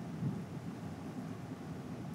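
Low, steady rumble of studio background noise with no distinct events.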